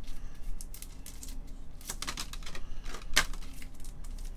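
A few irregular light clicks and taps over a low room hum, the sharpest about two seconds in and again near the end.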